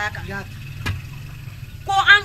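Speech trails off, leaving a short pause filled with a low steady background hum, a faint thin high tone and a single soft knock about a second in. Speech resumes near the end.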